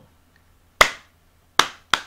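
A person clapping hands three times, sharp single claps: one about a second in, then two quick ones near the end.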